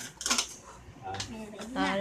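Toy burger-stacking pieces clicking and clattering against a glass tabletop as they are set out, a few short sharp knocks; a voice starts near the end.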